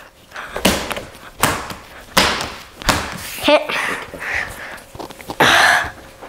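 Balls of pizza dough thudding onto a granite countertop as they are slapped and kneaded: four sharp thuds about three-quarters of a second apart, followed by brief voice sounds and a short rush of noise near the end.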